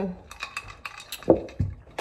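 Sipping an iced drink through a straw from a glass: a run of small clicks and ice clinks, with a louder swallow a little over a second in.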